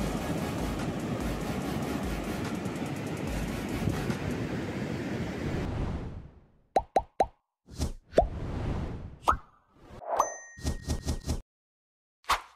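Ocean surf breaking on a sandy beach, a steady rush of waves. It stops abruptly about halfway through, giving way to animated-logo sound effects: a quick run of short pops, a couple of whooshes and a short ding.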